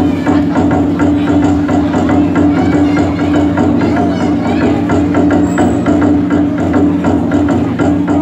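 Traditional festival drum beaten in a quick, steady rhythm to urge on the wrestlers during a bout, over a steady low hum.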